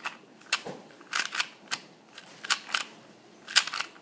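A YJ GuanPo 2x2 speedcube being turned by hand, its plastic pieces giving about eight sharp clicks, several in quick pairs. The layers are being pushed through misaligned turns, the cube corner cutting.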